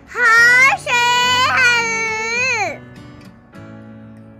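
A high-pitched, child-like voice calling out a word in two long, sliding sing-song stretches, over soft background music; the voice stops a little over halfway through, leaving only the quiet music.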